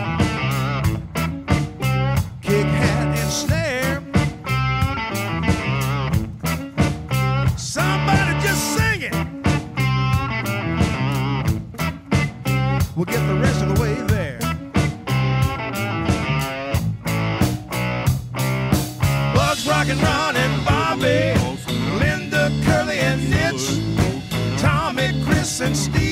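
Blues-rock band playing an instrumental passage: electric guitar lead lines with bent, wavering notes over a steady bass line and drums.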